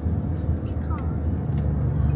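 Steady low rumble of car road and engine noise heard from inside the cabin while driving, with a brief faint pitched voice-like sound about a second in.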